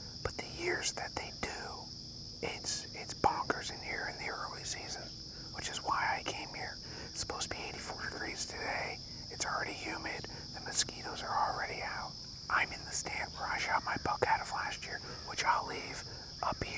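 A man whispering to the camera in hushed speech with short pauses. Behind it, a steady high-pitched insect chorus.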